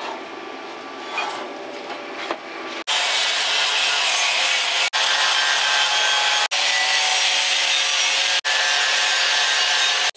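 Steel tubing being cut or ground with a power tool: a loud, steady rasping hiss that starts about three seconds in and is broken off sharply three times by jump cuts. Before that comes a quieter stretch of metal being handled on the bench.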